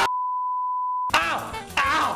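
A television test-card tone: one steady high-pitched beep held for about a second and cut off sharply, then music and a man's voice come back in.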